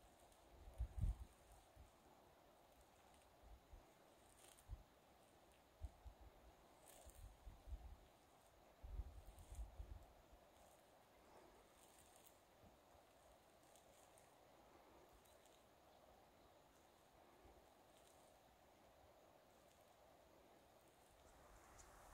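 Near silence: faint outdoor ambience, with a few soft low bumps in the first half and then only a steady faint hiss.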